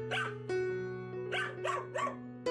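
A young dog barking sharply four times, once near the start and then three in quick succession, defensive barks at someone coming too close. Background music with held notes plays underneath.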